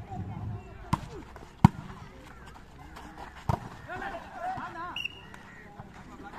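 A volleyball struck three times in a rally: sharp slaps of hands on the ball about one second in, again just after, and once more about three and a half seconds in, the middle hit the loudest. Faint shouts from players come between the hits.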